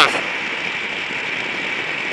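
Gas-powered racing go-kart engine running steadily at speed, heard from on the kart itself.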